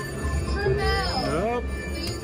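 Casino floor background: voices and electronic machine tunes over a steady low hum, as a video poker machine draws cards and pays a small three-of-a-kind win.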